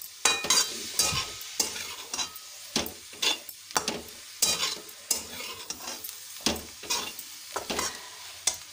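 Metal spatula scraping and knocking against a steel kadai as bread pieces are stirred, in irregular strokes about twice a second, over a low sizzle of frying.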